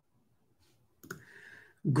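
Near silence, then a single click about halfway through, followed by a brief soft noise. A man starts speaking just before the end.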